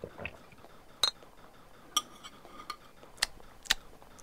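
Tableware clinking as a meal is eaten: several sharp, short clinks of cutlery, dishes and glass, about one a second, a couple of them ringing briefly like a glass being touched.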